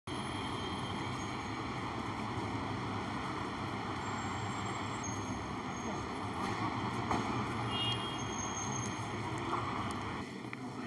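Steady outdoor street noise: an even rumble of passing traffic with a light hiss over it, with no single sound standing out.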